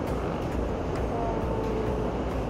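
Steady city road traffic below a pedestrian overpass, a low rumble, with a faint held tone partway through.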